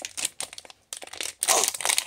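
Crinkling and tearing of a small foil packet being pulled open by hand, in uneven crackly bursts with a short pause a little under a second in, louder near the end.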